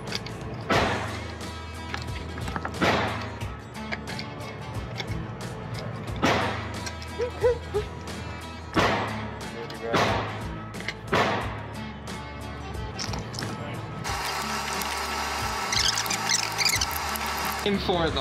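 Gunshots in an indoor range, about six single shots spaced one to three seconds apart, each with a short ringing echo off the hard walls, while rifle cartridges are pressed into a magazine by hand. About fourteen seconds in, a steadier hiss takes over.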